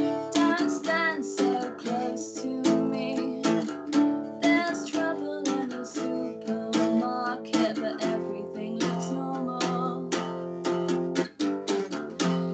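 A woman singing a slow song to her own strummed guitar.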